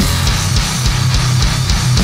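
Death metal band playing an instrumental passage: heavily distorted electric guitars over bass and a driving drum kit, with no vocals.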